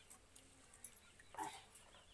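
Near silence with a few faint clicks, broken by one short animal call about one and a half seconds in.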